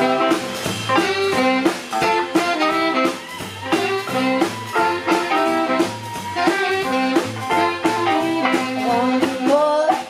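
Live band playing the instrumental opening of a blues-tinged song: electric guitar, hollow-body electric bass, drum kit and saxophone, with a steady beat and a walking bass line.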